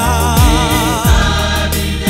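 South African gospel music: voices singing a held, wavering note over a steady bass line, with a low note that drops sharply in pitch twice.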